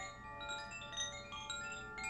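Chimes ringing: a stream of bright notes at several different pitches, new ones struck every few tenths of a second and each ringing on over the others.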